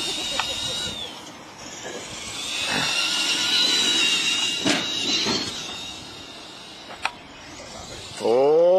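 Electric motors and gears of radio-controlled monster trucks whining high as the trucks drive across grass. One short whine rises in pitch at about a second in, and a longer whine follows in the middle. A few sharp knocks come through, the clearest about seven seconds in.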